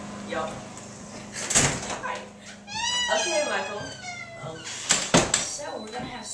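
A house door thumping twice, about a second and a half in and again near the five-second mark. Between the two thumps a high voice calls out, bending up and down in pitch.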